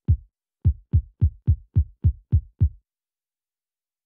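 Deep electronic kick drum from a hip-hop beat, sounding alone. One hit, then a quicker run of eight hits about three a second, stopping about three seconds in.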